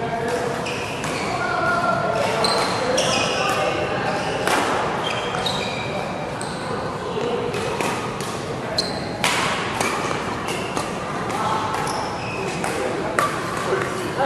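Shoes squeaking in short high chirps on an indoor badminton court mat, with sharp taps scattered throughout and voices echoing around the hall.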